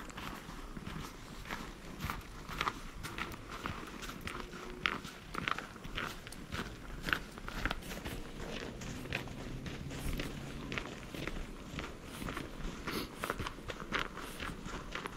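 Footsteps crunching in snow at an even pace, about two steps a second.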